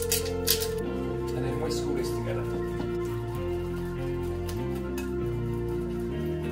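Background music of steady, slowly changing chords, with a few light clinks and scrapes of a whisk beating egg mixture in a glass bowl in the first couple of seconds.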